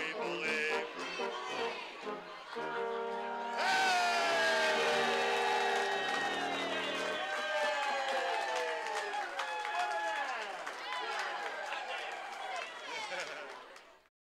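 A tuba band ends a Christmas song on a long held chord. About a second after the chord starts, a crowd breaks into cheering, whooping and applause. The cheering fades out at the very end.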